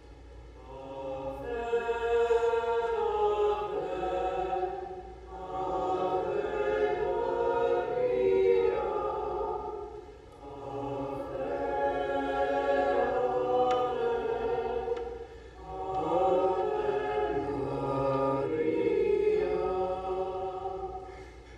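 A choir singing a slow sacred hymn in four long phrases, with brief breaks between them.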